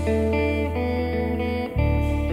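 Live band music: a saxophone section and guitar over a long held bass note that changes near the end, with drum kit and congas.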